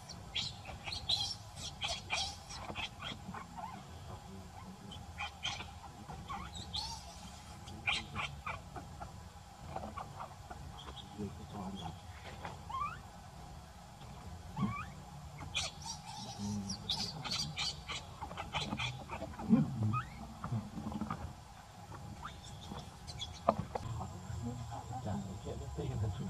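Animal squeaks and chirps in bursts of short, quick, high-pitched notes, with a few gaps between the clusters, over a faint steady hum.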